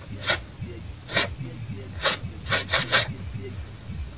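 A pencil scratching as it writes: about six short rasping strokes, the last three in quick succession, over a low steady hum.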